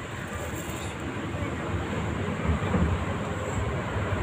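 A steady low rumbling noise with no distinct events, swelling slightly a little over halfway through.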